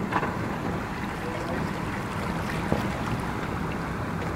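A boat under way: its motor running with a steady low hum, and wind buffeting the microphone.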